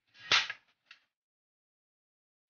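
A kitchen knife cutting the end off a raw carrot and striking the cutting board: one sharp cut about a third of a second in, then a faint click just before a second in.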